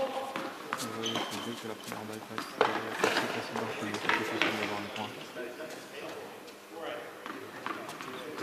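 Several voices talking and calling out at once, not as a single clear speaker, with a few scattered sharp knocks among them.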